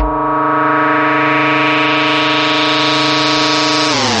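Electronic dub track in which the beat cuts out and a single distorted synthesizer note is held steady, rich in overtones.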